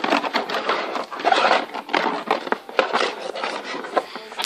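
Scraping and rubbing over the bottom of a plastic bin in quick, irregular strokes, done to build up a static charge.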